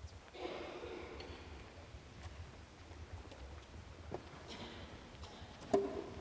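Quiet church room sound as a procession moves: faint rustling and shuffling, a brief soft murmur early on, a few light clicks, and a sharper knock with a short ringing tone near the end.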